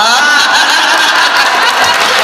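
A man laughing into a handheld microphone, his voice amplified.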